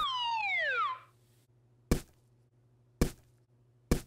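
Cartoon falling-whistle sound effect: a pitched whistle sliding steadily downward for about a second. It is followed by three short, sharp knocks roughly a second apart.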